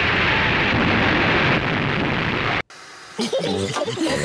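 Old newsreel sound of the Hindenburg airship exploding into flames: a loud, dense roar of noise that cuts off abruptly about two and a half seconds in.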